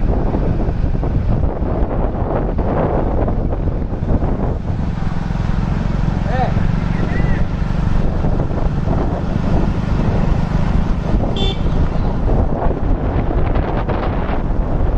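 Loud, steady low rumble of wind buffeting the microphone of a camera moving alongside the runners, with a few brief faint chirps or calls in the middle.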